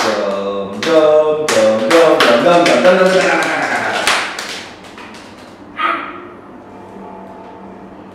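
Voices chanting together over a quick run of hand claps in the first four seconds of a classroom clapping game, then a short call a couple of seconds later.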